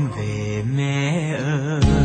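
Music from a slow Vietnamese ballad: a held melody line with wide vibrato, and near the end the bass and accompaniment come in strongly.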